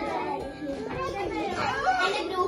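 Young girls' voices chattering together, with no clear words.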